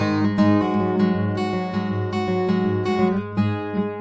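Background music played on acoustic guitar, with a steady run of picked and strummed notes.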